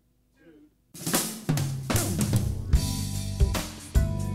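A live band starts playing about a second in: a drum kit hitting snare and bass drum, with electric bass and keyboard chords underneath.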